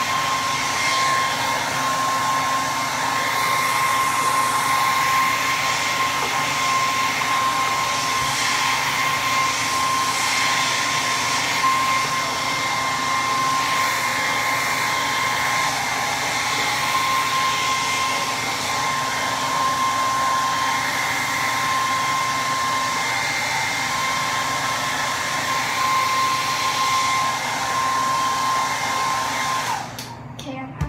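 Blow dryer running steadily on hair, a rush of air with a constant whine; it switches off just at the end.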